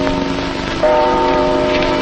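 Church bells tolling on an old film soundtrack, a new stroke ringing out a little under a second in and sustaining over a steady hiss.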